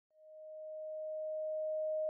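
A single pure sine-wave tone at a solfeggio frequency, held at one steady pitch and fading in slowly from silence.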